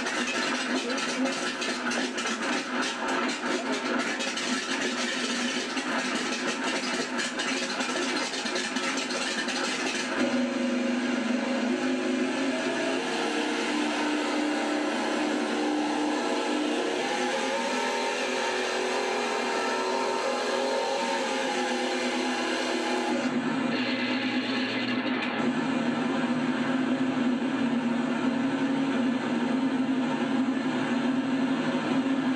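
Model Sounds Inc Shockwave sound system playing its simulated Corsair engine sound loudly through the model's speakers, run up on the throttle. The engine sound changes character about ten seconds in and again a little past twenty seconds.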